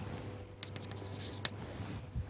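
Chalk writing on a chalkboard: faint scratching with a couple of sharp taps of the chalk.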